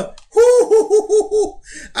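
A man laughing: a quick run of about six high-pitched "ha"s in a row that then breaks off.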